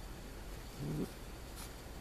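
Sheepadoodle puppy making one short, low vocal sound, a brief grunt-like noise about a second in.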